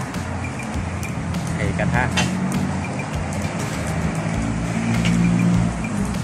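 Eggs and sausage slices frying in a small pan over a gas burner, with a steady hiss of sizzling over a continuous low rumble.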